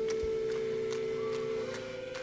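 A synthesizer holding one steady, pure-sounding note in a rock song's intro, stepping up to a slightly higher note near the end.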